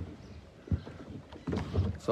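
A few irregular knocks and thuds from a floating dock on the lake, with water lapping against it.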